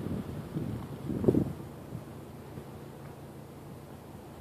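Wind buffeting the microphone with rustling handling noise, and a single thump about a second in. After that it settles to a quieter, steady low rumble.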